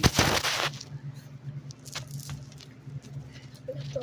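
Phone being handled close to its microphone: a loud rubbing rustle for under a second at the start as the lens and mic are covered, then a few faint taps and clicks over a steady low hum.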